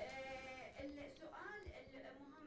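Faint speech well off the microphone: a long held hesitation sound, then a few soft words.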